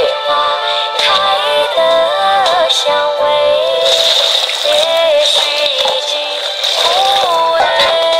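Background music: a high-pitched sung melody with little bass.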